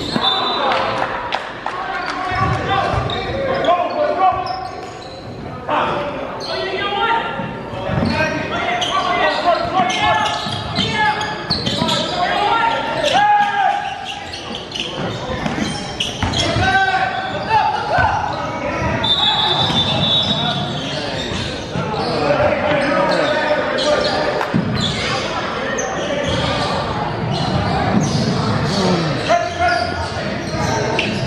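Basketball game in a gymnasium: indistinct voices of players and spectators echo through the large hall over a basketball bouncing on the hardwood court.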